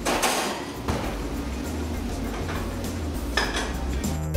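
Metal clatter of a steel oven door and pan being handled, once just after the start and again near the end, over background music with a steady bass line.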